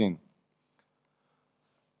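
A man's voice finishes a sentence, then a pause of near silence with a few faint clicks about a second in.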